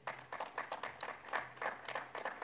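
Sparse applause: a few pairs of hands clapping, heard as separate, irregular claps several times a second.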